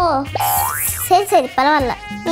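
Comedy sound effect: a quick rising whistle-like glide with a hiss over it, about half a second in, laid over background music, followed by a short line of speech.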